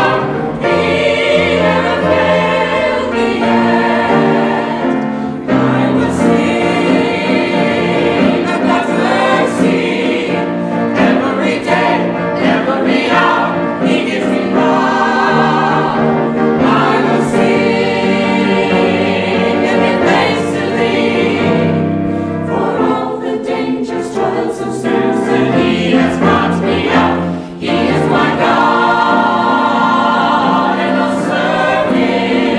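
Mixed-voice church choir singing a gospel song in full voice.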